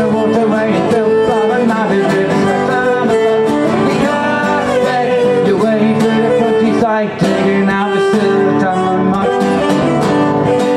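Fiddle and strummed acoustic guitar playing a lively folk tune together, with the fiddle carrying the melody over the guitar's rhythm; the sound drops briefly about seven seconds in.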